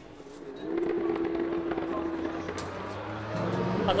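Racing motorcycle engine running at steady revs, its note coming in and holding for about two seconds, with scattered faint clicks and crackles over it.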